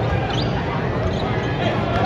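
Basketball being dribbled on a hardwood court during live play, under the steady chatter of the arena crowd.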